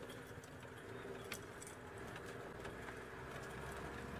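Open safari vehicle's engine running steadily as it drives along a dirt track, heard faintly from inside the open cab, with a single light click about a second in.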